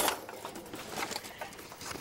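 Quiet kitchen handling sounds: a sharp knock right at the start, then faint light rustles and taps.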